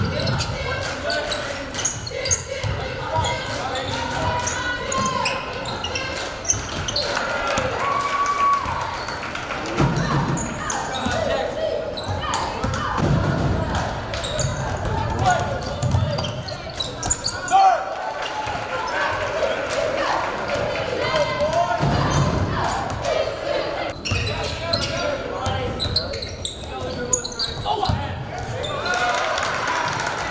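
A basketball bouncing on a hardwood gym floor during play, with players and spectators calling out and talking, all echoing in a large gym.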